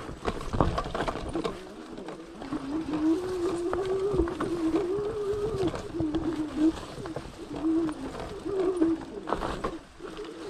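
Fat-tire electric mountain bike jolting over a rough trail, with knocks and rattles near the start and again near the end. From about two seconds in, a low wavering hum rises and falls, breaking off several times.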